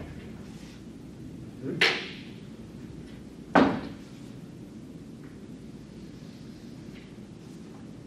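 Two sharp knocks against a chalkboard or its chalk tray, about two seconds apart, each with a short ringing tail, over steady room noise.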